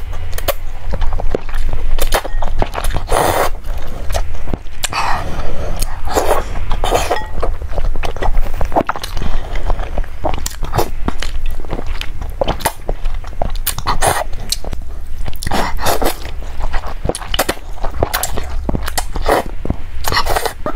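Close-miked slurping of glass noodles out of a spicy chili broth, with wet chewing, in irregular bursts over a steady low hum.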